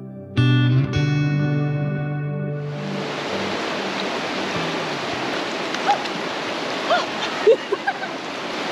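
Guitar music plays for the first three seconds and stops. Then a fast-flowing river rushes steadily, with a few short rising-and-falling calls near the end.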